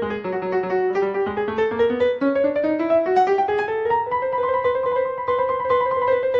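Solo piano playing a quick run of notes from a sonata movement, the melody climbing steadily over the first few seconds and then holding at a higher register.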